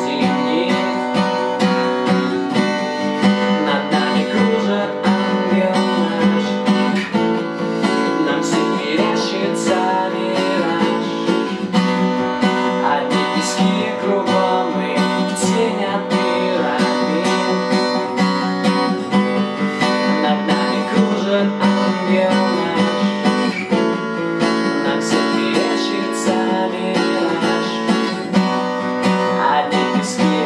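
Ibanez steel-string acoustic guitar strummed with a capo on the neck, playing a steady rhythm. A man sings along in Russian over parts of it.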